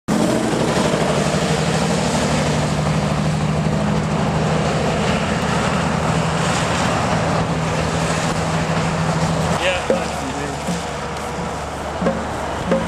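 Heavy log truck's diesel engine running steadily as it passes along a wet, slushy street, with the hiss of traffic on the wet road; the engine hum stops about nine and a half seconds in, followed by a brief voice.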